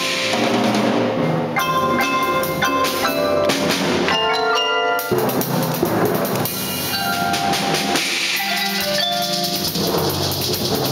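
Percussion ensemble playing: marimbas and other mallet keyboards sound a melody of struck, ringing notes over a steady rhythm of drum hits.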